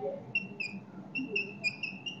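Chalk squeaking on a chalkboard while writing: a quick run of short, high squeaks, one per stroke.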